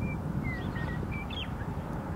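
A bird calls with about six short chirps and whistles, some level and some sliding down in pitch, over a steady low rumble from an approaching diesel-hauled coal train.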